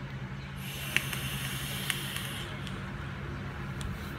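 Vape atomizer on a VooPoo Drag box mod hissing as it is fired during a long drag, for about two seconds, with a few faint clicks.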